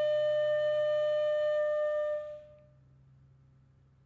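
Edward Riley one-key flute, c.1820, holding one long steady final note that fades out a little over two seconds in. After it comes near silence with a faint low hum.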